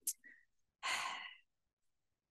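A woman sighs once into a handheld microphone, a single breathy rush of about half a second, just after a faint mouth click.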